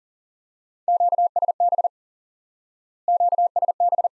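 Morse code sent at 40 words per minute as a steady, clean keyed tone: two quick groups about a second long, a little over a second apart, spelling the Q-code QSB twice.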